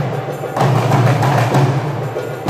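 Marawis ensemble playing hand drums: a fast interlocking patter of drum strokes over a deep, steady drum boom, with a loud accented stroke about once a second.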